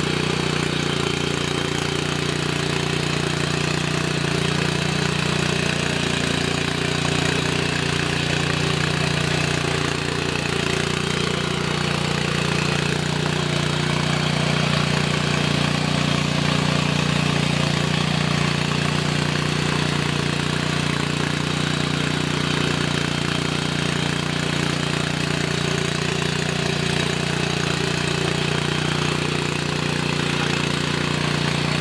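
Oshima walk-behind mini tiller's small engine running steadily under load while its rotary tines dig into dry soil, the pitch wavering a little as the load changes in the first half.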